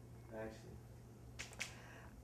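Quiet room with a low steady hum, a brief faint murmur of a voice, then two quick sharp clicks close together about one and a half seconds in.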